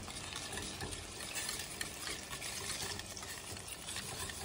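Wire whisk stirring brown rice farina (grits) in a stainless steel saucepan: a steady scraping swish.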